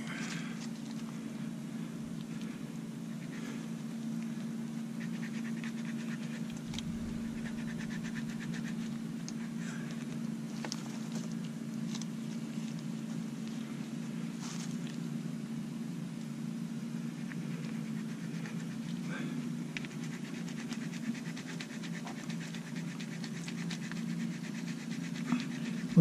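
Faint scraping and small clicks as a slightly blunt utility-knife blade saws through greasy stern-gland packing rope, over a steady low hum.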